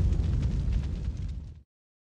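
Deep rumbling tail of a cinematic boom sound effect in a logo sting. It slowly fades, with faint crackle above it, and cuts off abruptly about one and a half seconds in.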